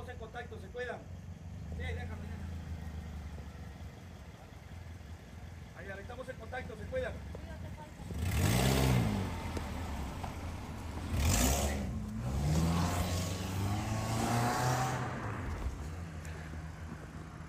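Cars driving past close by, one about eight seconds in and another about three seconds later, each engine rising and falling in pitch over the sound of its tyres. A further engine keeps running for a few seconds after.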